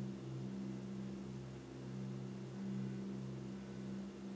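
A steady low hum, a few low tones held level and wavering slightly, with no taps or other sounds on top.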